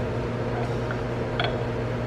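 Steady low background hum, with one faint click a little past halfway as the wheel extraction tool is fitted into the grinding wheel's hub.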